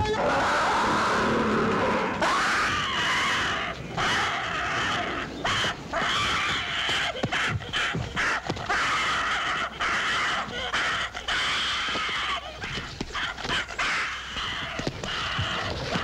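Film sound effects of a gorilla screaming and men shouting as they wrestle the animal down, a loud continuous commotion broken by brief gaps.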